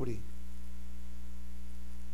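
Steady electrical mains hum, a few constant low tones that do not change, with the tail of a spoken word dying away at the very start.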